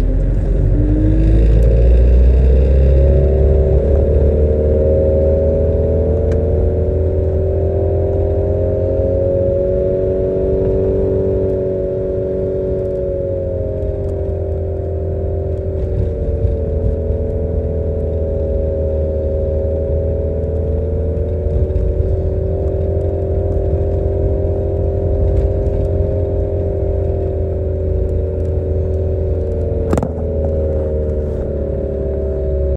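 Car engine and road noise heard from inside a moving car. The engine's drone climbs in pitch over the first two seconds as the car accelerates, then rises and falls gently with speed over a steady low rumble.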